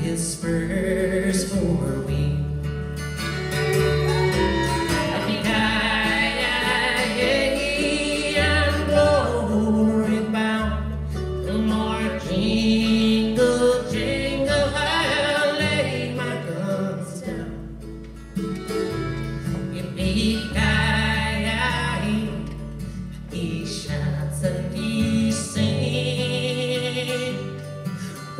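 Live acoustic string band playing a country song: fiddle, flat-top guitar, mandolin and upright bass, with a woman's singing over the instruments.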